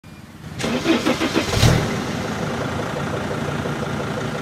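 Mercedes-Benz Sprinter T1N diesel engine cranked over by the starter with a quick even rhythm, catching about a second and a half in and settling into a steady idle.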